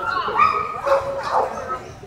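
A dog barking in several short, high yips in quick succession, over people's voices.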